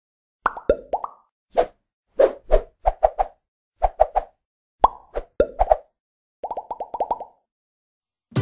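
A run of short, hollow pop sound effects in irregular clusters, ending in a quick string of about eight pops, like the sound track of an animated intro.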